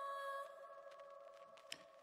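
Faint held synth note at the end of a hip-hop track, one steady pitch that fades away about halfway through. A single small click comes shortly before the end.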